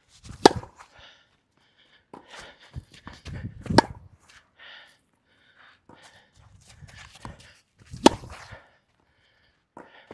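Tennis ball struck back and forth in a baseline rally with rackets strung with Kirschbaum Flash 1.25 mm polyester string. Three loud, sharp racket hits come about half a second, four seconds and eight seconds in, with fainter hits and bounces between them.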